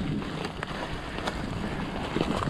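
Wind rushing over the microphone as an e-mountain bike rolls across a forest floor of dry leaves, with tyre rustle and several short knocks and rattles from the bike over the bumps.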